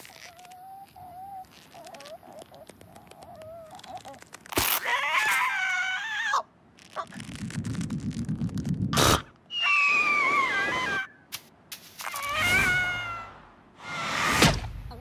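Cartoon sound effects for an animated bird: a sharp thump about four and a half seconds in, then squawks and screams from the bird. Between them comes a low fluttering rumble, and one long cry slides down in pitch.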